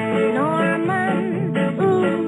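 A 1962 chart pop record playing: a singer's voice over strummed guitar and backing band, the vocal line breaking briefly near the middle and then going on.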